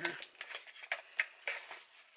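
Small cosmetic packages and tubes clicking and rustling as they are packed back into a small cosmetics bag, a few light knocks about half a second apart.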